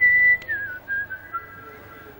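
A person whistling a few notes of a tune: a held note, then a wavering slide down to lower notes that grow fainter.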